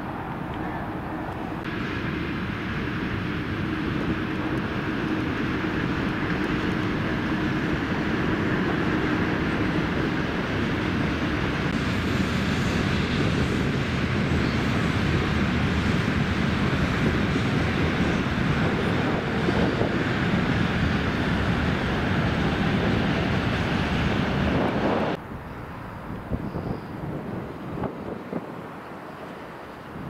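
Aircraft passing overhead: an even engine roar that builds slowly for about twenty seconds, then cuts off abruptly.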